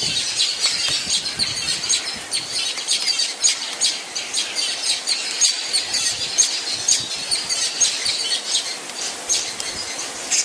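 Hispaniolan woodpeckers calling: a continuous, busy chatter of short, high-pitched squawking notes, several a second.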